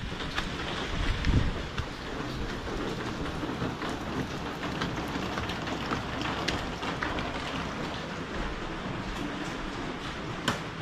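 Steady rain falling, with many scattered single drop clicks throughout and a brief low rumble about a second in.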